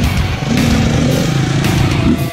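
KTM dual-sport motorcycles riding past close by on a dirt track, their engines loud and steady as they go by.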